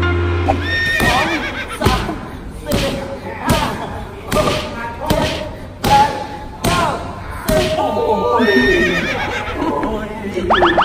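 Kicks and punches landing on Thai pads, a sharp smack about every three-quarters of a second, with voices crying out and laughing between the strikes.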